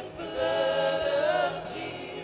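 Several voices singing together in long held notes, a choir or worship team sustaining a phrase of a worship song.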